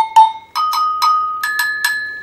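Three-bell metal agogo struck with a wooden stick, about four or five strokes a second. It steps up from the lowest bell to the middle one about half a second in, then to the highest about a second and a half in. Each bell rings on between strokes with a clear, bright note.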